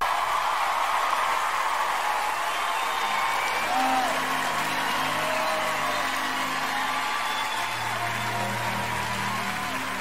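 A concert audience applauding and cheering, with a few whoops. About halfway through, soft sustained low instrumental notes of a ballad introduction come in under the applause.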